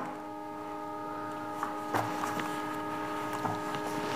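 A quiet, steady hum made of several held tones, with a few faint clicks and taps about halfway through.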